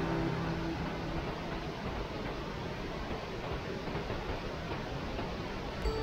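Steady rushing of a mountain river's water through a gorge, an even noise without pitch. A music track fades out about a second in.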